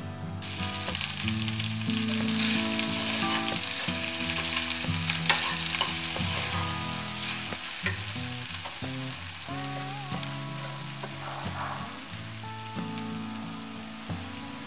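Spinach rice sizzling in a hot frying pan as a spoon stirs it. The sizzle starts about half a second in, grows through the middle and slowly fades, with a couple of sharp spoon clicks against the pan about five to six seconds in.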